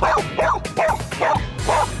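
Border collie barking six times in quick succession, about three barks a second, counting out the answer to "three times two".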